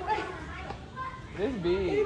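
People's voices in a busy shop: indistinct talk, with a raised voice sliding up and down about a second and a half in.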